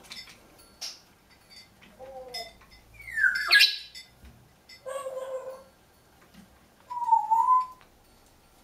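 Congo African grey parrot calling in short bursts: a brief call, then a loud falling squeal about three seconds in, a harsher call around five seconds, and a whistle that dips and rises again near the end. Light clicks of the parrot's beak on its wooden chew toy sound between the calls.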